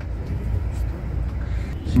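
Steady low rumble of a tour coach's engine and road noise, heard inside the cabin while it drives; a man's voice starts speaking right at the end.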